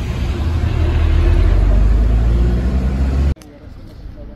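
Street traffic with a vehicle engine running close by: a steady low rumble that cuts off suddenly a little over three seconds in.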